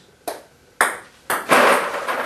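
Table tennis ball being served, ticking sharply off the bat and table three times about half a second apart, then a louder, longer clatter near the end.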